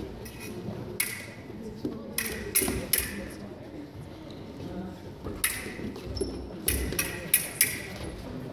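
Sharp clacks and clinks from a foil fencing bout, about nine in all in two quick clusters, one around two to three seconds in and one around six to seven and a half seconds in, over a murmur of voices in a large hall.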